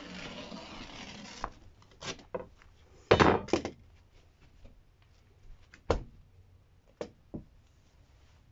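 Fiberglass insulation batts being cut and handled on a plywood floor: rustling at first, then scattered knocks and scrapes. The loudest sound is a rough rustle of about half a second, three seconds in.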